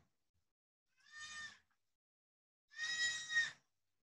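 An animal calling twice in the background, a short call about a second in, then a longer, louder one near the end.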